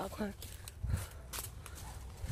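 Footsteps and rustling in dry leaves and undergrowth: a low thump about a second in, then a short crackle.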